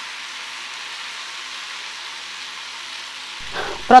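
Drumstick (moringa pod) and potato pieces frying in mustard oil in a pan, with a steady, even sizzle.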